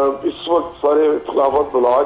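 A man speaking over a remote phone or video line: a thin voice with the high end cut off.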